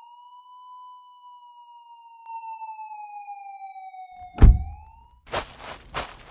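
Police siren sound effect: one long wailing tone that slowly falls in pitch, cut by a loud thump about four and a half seconds in, then a short rise and a run of rough, noisy bursts near the end.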